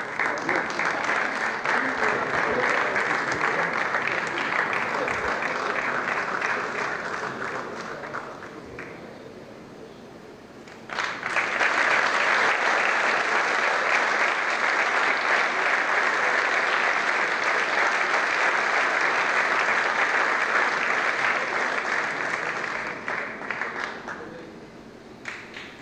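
Audience applauding. The clapping dies down about eight seconds in, then breaks out again suddenly about three seconds later and runs on until it fades just before the end.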